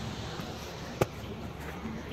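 Steady outdoor background noise, broken about a second in by a single sharp knock.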